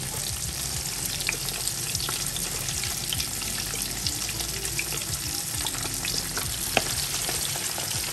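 Cornflake-coated chicken drumsticks deep-frying in hot oil in a frying pan: a steady sizzle with many small crackles and one louder pop late on.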